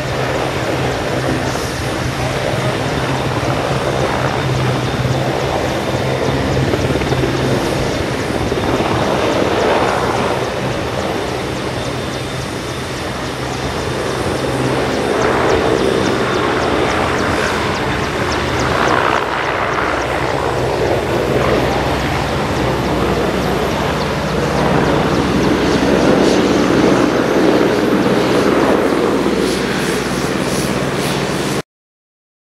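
AW101 (MCH-101) helicopter lifting off and holding a low hover: its three turbine engines and five-bladed main rotor run at take-off power, a steady hum under loud rotor noise that swells and eases a few times.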